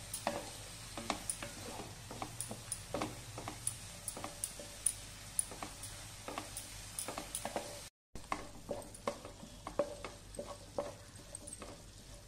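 Wooden spatula stirring and scraping chopped onions and green chillies in a nonstick frying pan, irregular scrapes and light taps over a faint sizzle of the onions softening in oil. The sound cuts out for a moment about eight seconds in.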